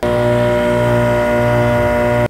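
27,000 BTU basement air conditioner running with a loud, steady hum and whine, one unchanging pitch with many overtones. It is an abnormal noise that the owner takes for either a bearing or the compressor going.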